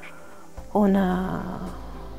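A woman's drawn-out hesitation sound, a single held "ehh" that starts loud about two-thirds of a second in and trails off over about a second.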